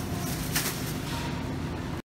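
Supermarket background noise: a steady hum of store ambience, with a short rustle about half a second in.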